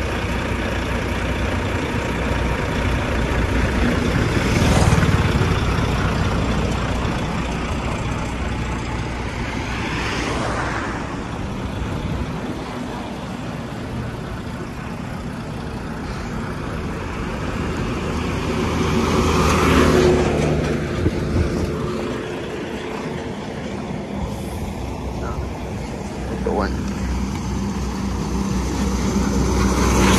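Highway traffic beside a heavy diesel truck: a low engine running steadily underneath, while several vehicles go past, swelling and fading about 5, 10 and 20 seconds in. At the end a tipper truck passes close by.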